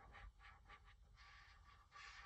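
Near silence with faint, repeated strokes of a marker on paper as a caterpillar segment is coloured in.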